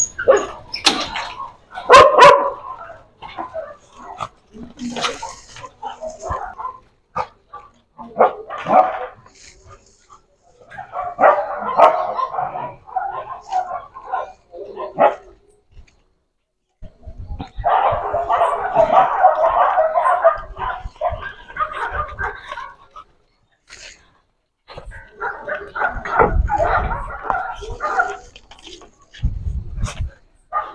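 Dogs barking, yipping and whining excitedly in irregular bursts as they are let out of a chain-link pen, after a few sharp metal clanks from the gate's sliding latch in the first two seconds.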